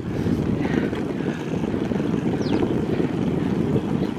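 Steady low rumble of wind buffeting the microphone of a camera on a moving bicycle, with two faint high chirps about halfway through.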